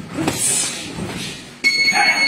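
Muffled noise of boxing sparring, then about a second and a half in a gym round timer starts a steady electronic buzzer tone, signalling the end of the round.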